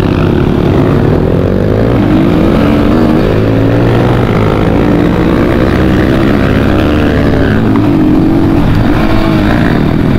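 Dirt bike engine running continuously under way, its revs rising and falling with the throttle.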